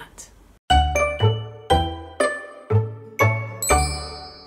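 A short musical jingle starts about half a second in. It is a run of notes, each struck over a bass note and fading quickly, with a new note roughly every half second, and it ends on a high held chime.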